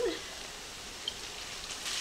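Ground beef, butter and flour sizzling gently and steadily in a skillet on the stove.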